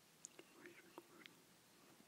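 Near silence: faint room tone with a few soft, short clicks and small rustly noises.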